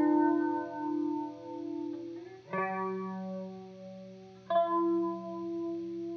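Music: electric guitar through a chorus effect. Chords are struck about two and a half and four and a half seconds in, and each is left to ring out with a slow wavering.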